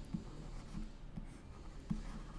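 Pen stylus writing on a digital tablet, heard as a series of light taps and strokes with the loudest near the end.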